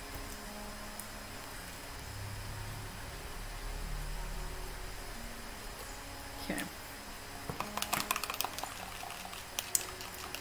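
Low room hum, then light clicks and taps from plastic being handled over the last few seconds.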